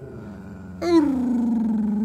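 A dog giving one long, loud vocal call that begins about a second in and falls slowly in pitch, with a fainter pitched sound before it.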